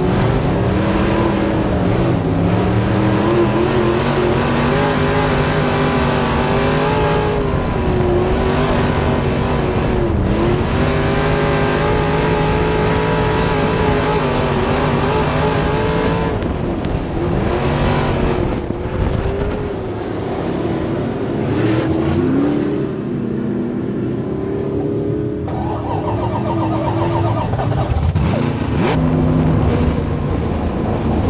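A B-Mod dirt track race car's V8 engine at racing speed, heard from inside the cockpit. Its pitch repeatedly climbs and dips as the throttle goes on and off. For a few seconds past the middle it runs lower and quieter before picking up again.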